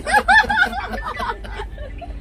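A woman laughing in short bursts, loudest in the first second and fading after, over a steady low rumble.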